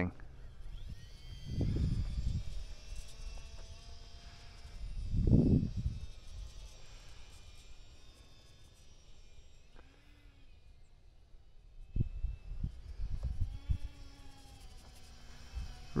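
Faint high whine of the E-flite UMX Twin Otter's twin small electric motors and propellers in flight, drifting slightly in pitch as the plane moves. Wind buffets the microphone twice, about two and five seconds in, and rumbles against it again near the end.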